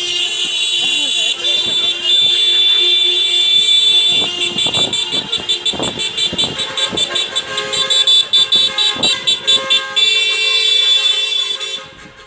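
Many car horns honking as a motorcade of cars drives past: long held blasts at first, then a long run of quick repeated toots from about four seconds in until near the end.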